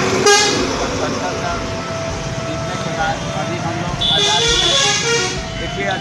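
Street noise of background voices and road traffic with vehicle horns sounding: a short loud blast just after the start and a high-pitched tone about four seconds in.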